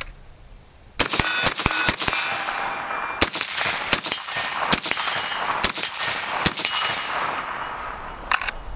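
Suppressed BCM 11.5-inch short-barreled AR rifle firing: about a second in, a quick string of five shots, then five more single shots a little under a second apart, each with a ringing tail. The suppressor is mounted over a War Comp muzzle device, which the shooter finds makes it a little louder.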